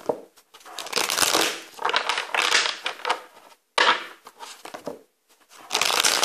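A tarot deck being shuffled by hand: a run of papery rustling bursts, each about a second long, with short pauses between.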